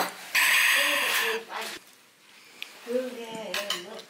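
A person slurping broth from a bowl: one loud sip lasting about a second, then a shorter, softer one.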